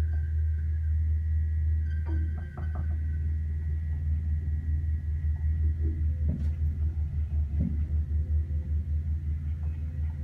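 1930s Staley single-speed traction elevator running with a steady low rumble and a faint high whine. A few light clicks come about two seconds in, and the rumble turns into a rhythmic pulsing, a few beats a second, in the second half.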